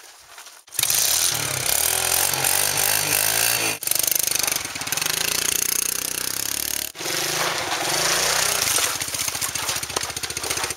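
Small dirt bike engine running and revving, cutting in suddenly about a second in, its pitch rising and falling as the bike rides off. The sound breaks off abruptly twice.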